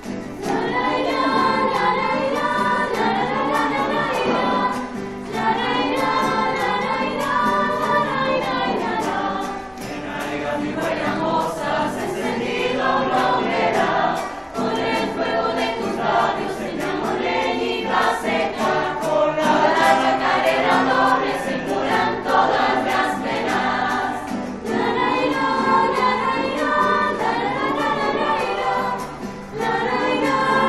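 A mixed choir of young voices singing, accompanied by strummed acoustic guitar. The singing comes in phrases with short breaks between them.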